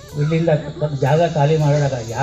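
Speech only: a man talking continuously into a handheld microphone.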